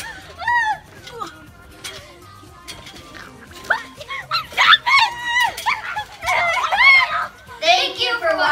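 Girls shrieking and laughing in high-pitched squeals, in several bursts.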